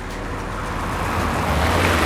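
A car driving past on wet asphalt: tyre hiss and engine noise that swell steadily over the two seconds, loudest near the end, over a low rumble.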